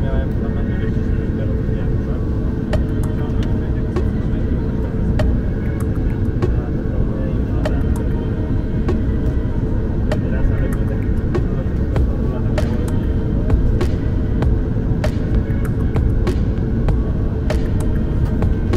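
Jet airliner cabin noise while taxiing: a steady low rumble of the turbofan engines and rolling gear with an even hum, and scattered sharp clicks and ticks throughout.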